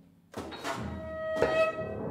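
Contemporary chamber ensemble of flute, saxophone, cello and piano playing. A brief near-silent gap is broken about a third of a second in by a sharp attack, then a held high note swells, with another sharp accent about halfway through.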